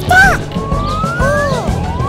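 Children's-song backing music with a high cartoon voice calling out, then a slow rising whistle-like glide lasting about a second, with a second rising glide starting near the end.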